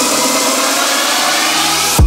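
Electronic dance music in a build-up: the bass is cut out and a loud white-noise sweep fills the high end, with heavy bass coming back in right at the end.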